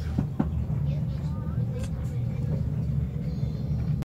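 Steady low rumble of a moving passenger train heard from inside an open-plan sleeper carriage, with two short knocks near the start.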